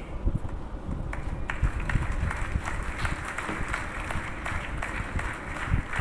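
Audience applauding in a large hall, a steady crackle of many hands clapping.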